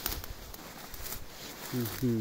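Rustling of tall meadow grass and clothing with scattered light crackles as a man moves through the vegetation. Near the end a man's voice starts a short hum.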